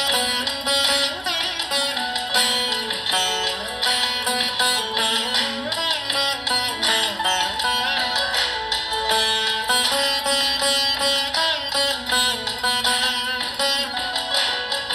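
Saraswati veena playing a film-song melody, with a steady stream of plucked notes and frequent sliding bends in pitch made by pulling the strings along the frets.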